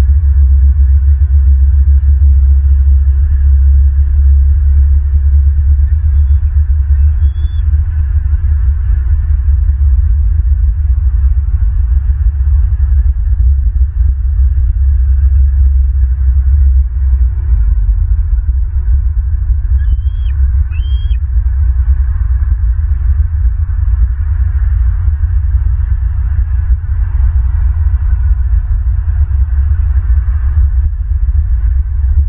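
Wind buffeting an outdoor nest-cam microphone: a loud, steady low rumble. Two faint, short bird calls come high above it, about seven seconds in and again about twenty seconds in.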